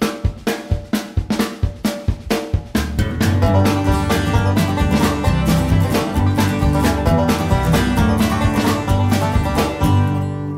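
Upbeat background music with a quick, even beat of plucked strings and drums; a fuller band with heavier bass comes in about three seconds in.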